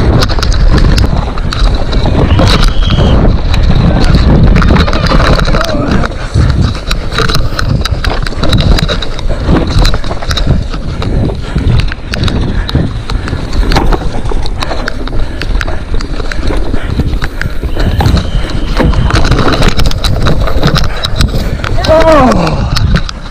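Mountain bike rattling over rough, wet singletrack at speed, with many sharp knocks and clicks from the frame and drivetrain over a continuous rumble of tyres and wind on the microphone.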